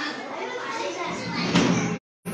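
A group of young children and adults chattering and calling out over one another in a room, with a louder burst of noise just before the end.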